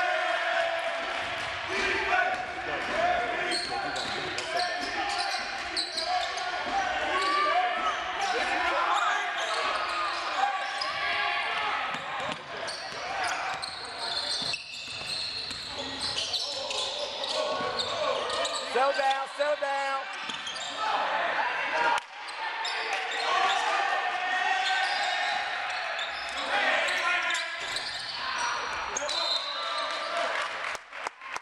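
Live basketball game in a gymnasium: many voices calling and talking over each other, with a basketball bouncing on the hardwood floor, all echoing in the large hall.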